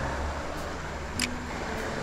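Steady hiss of shallow running creek water, with a faint low hum underneath and one faint click a little over a second in.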